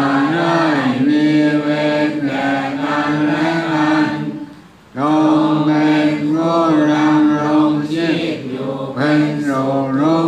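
Thai Buddhist chanting in a steady, level recitation tone, in two long phrases with a short break for breath about four and a half seconds in. It is the chant for spreading loving-kindness and dedicating merit that closes a meditation session.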